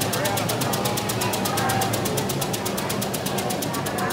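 Split-flap departures board clattering as its flaps turn over to new times and destinations: a rapid, even ticking of about ten clicks a second.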